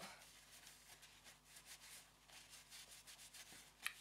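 Faint rubbing of a tissue wiping lipstick off the lips, in several soft irregular strokes.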